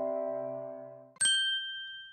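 The sustained chord of an electronic intro jingle fades out. A little over a second in, a single bright ding chime is struck and rings on, fading away.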